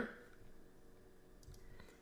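A few faint computer keyboard keystrokes over quiet room tone.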